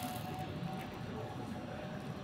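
Quiet, steady city-street background noise, with faint sounds of a man chewing a bite of crisp pizza.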